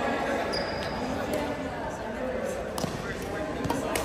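Badminton rackets striking a shuttlecock in a rally: several sharp hits in an echoing sports hall. A brief high squeak comes about half a second in, over background voices from around the hall.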